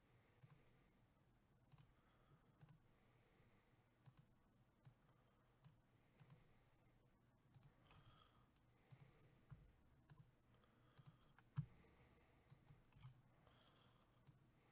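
Faint, scattered clicks of a computer mouse, one a little louder about two-thirds of the way through, over near-silent room tone.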